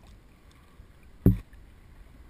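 Sea water lapping and sloshing right against a waterproof camera case at the surface, with one loud, short low thump just past a second in.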